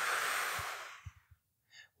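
A man blowing out forcefully through the mouth, emptying the last of the air from his lungs at the end of a three-part exhale. The hiss fades out about a second in and is followed by a few faint low thumps.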